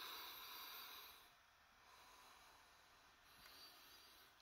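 A man's soft, long breath drawn in through the nose, lasting a little over a second, then near silence.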